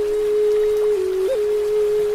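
Native American flute holding one long low note, broken by a short upward grace-note flick a little past a second in, over faint running water.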